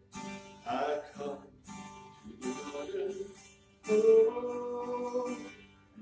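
Acoustic guitar strummed slowly in hymn accompaniment, chords struck in separate groups and left to ring, the loudest a little before the four-second mark.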